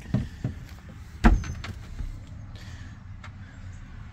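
A few light knocks and one sharp thump about a second in, over a steady low rumble: handling noise as a boat's engine-compartment access hatch is opened and reached into.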